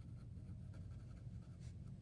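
A pen writing on a paper workbook page: faint scratching of the tip as a handwritten word is put down.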